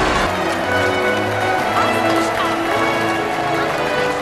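Film soundtrack: background score music with a man's voice speaking lines of dialogue.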